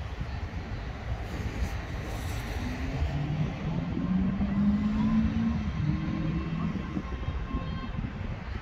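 Low rumbling wind noise on the microphone, with a low mechanical drone, like a passing motor vehicle's engine, swelling in the middle and fading near the end.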